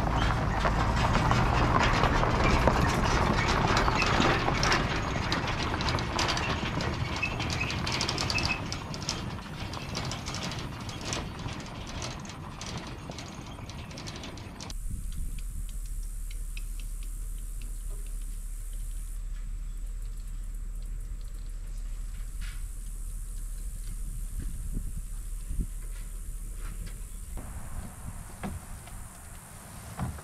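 A pickup pulling an old canoe trailer along a gravel drive, the trailer clattering and rattling and fading as it goes. About halfway through the sound cuts to a much quieter low wind rumble with a few light knocks.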